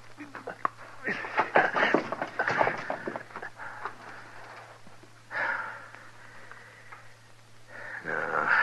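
Radio-drama sound effects of a hanged man being cut down from cell bars: a burst of rustling, scraping and knocking in the first few seconds, then a short grunting breath about five seconds in. A steady low hum from the old recording runs underneath.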